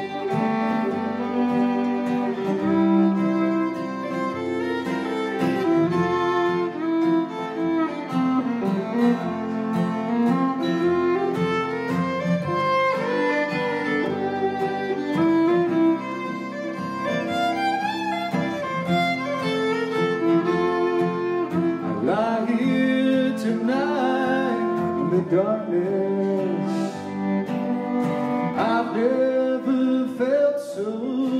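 A slow tune played on fiddle over strummed acoustic guitar, the fiddle carrying the melody of the song's instrumental introduction with long bowed notes and slides.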